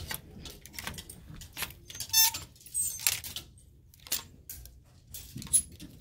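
Plastic clothes hangers clicking and scraping along a metal clothing rack as garments are pushed aside one after another, in short irregular strokes. A brief high squeak about two seconds in and a sharp click near the end stand out.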